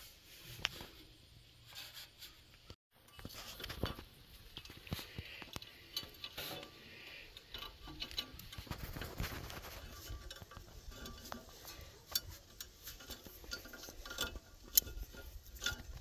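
Wire being threaded through a steel plate and twisted around the seat's coil springs: scattered light metallic clicks, scrapes and clinks.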